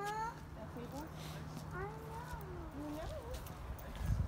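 Faint, high-pitched voices talking in the background, with no clear words, over a steady low hum that stops about three seconds in.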